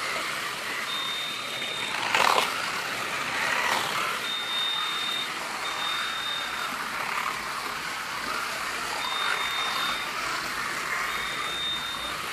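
Electric slot cars running around a multi-lane slot car track, a steady whir of small motors and guides in the slots, with a louder clatter about two seconds in. A high steady tone sounds five times, each about a second long.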